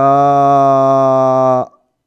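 A man's voice holding one long, level hesitation sound, like a drawn-out "uhh", for about a second and a half, then stopping.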